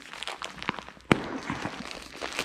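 Plastic shrink-wrap on a pack of microfiber applicator pads crinkling and crackling as fingers pick at it to open it, with one sharp snap just over a second in.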